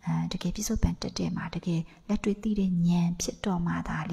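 Only speech: a woman talking steadily into a microphone in a dhamma talk, with brief pauses between phrases.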